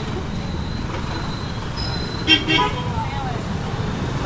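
Steady road traffic noise from a busy street, with a short bit of voice a little past the middle.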